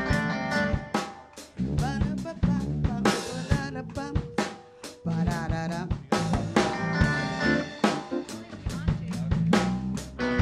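Live band playing: a drum kit keeps a steady snare and bass drum beat under guitar, upright bass and keyboard, with one long note held near the middle.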